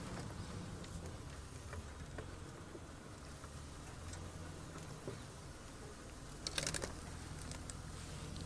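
Open safari vehicle's engine running slowly as it crawls along a dirt track: a low steady hum with faint ticks, and a short louder clatter about six and a half seconds in.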